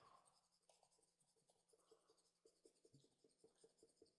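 Very faint quick ticking of a pen stylus making short strokes on a Wacom graphics tablet, about six a second from about halfway through; otherwise near silence.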